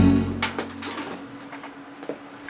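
The last sustained piano-and-strings chord of a live keyboard performance dies away over the first half second. A sharp click follows, then faint scattered knocks and handling noises over a low steady hum.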